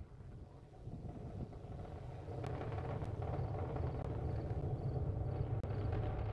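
Falcon 9 first stage's nine Merlin engines heard from the ground during ascent: a deep, rough rumble that swells over the first couple of seconds, then holds steady.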